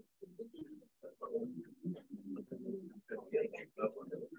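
Indistinct, choppy chatter of several people talking in a hall, picked up faintly by a video-call microphone.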